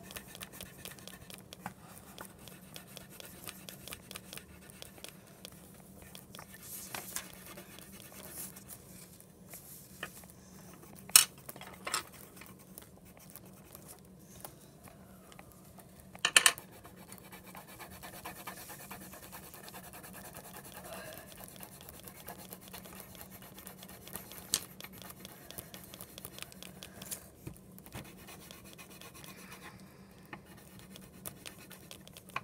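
Marker scratching steadily across paper as a picture is coloured in, with a few sharp knocks on the table, the loudest about a third of the way in and just past halfway.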